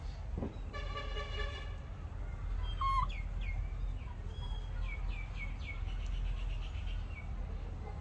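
A single short, steady horn toot about a second in, then a songbird calling a run of quick downward-sliding chirps for several seconds, over a steady low rumble.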